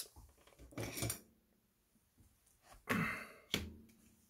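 Mostly quiet, with a few brief handling noises on a workbench as a small RC car chassis is set down on a cutting mat and a digital caliper is picked up. There is a short rustle about a second in, then a louder rustle near three seconds that ends in a sharp click.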